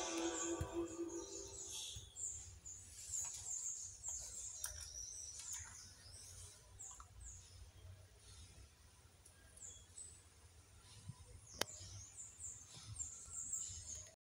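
Background music fading out in the first couple of seconds, leaving faint, high, repeated bird chirps, with one sharp click about three-quarters of the way through.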